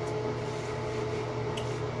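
Steady hum of a ventilation fan in a small room, with a faint brief tick near the end.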